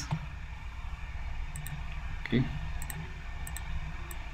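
A few computer mouse clicks, each a quick pair of sharp ticks, over a steady low hum.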